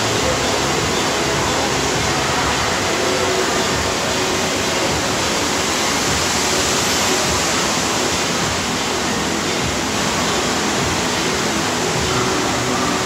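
Steady rush of pumped water flowing as a thin sheet up the sloped surface of a FlowRider surf simulator, running continuously without a break.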